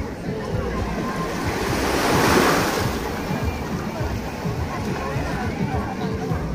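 Small waves lapping and washing over sand at the water's edge, one wash swelling louder about two seconds in. Wind rumbles on the microphone.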